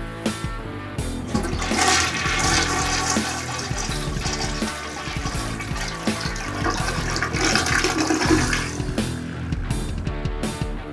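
Toilet flushing: water rushing and swirling down the bowl, starting about a second and a half in and dying away near the end. The flush is strong and full, a once slow-draining toilet now clearing freely with its scale deposits softened and brushed away.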